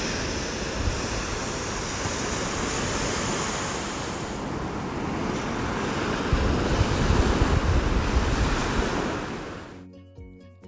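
Ocean surf washing onto a sandy beach, with wind rumbling on the microphone. It grows louder about six seconds in and fades out just before the end.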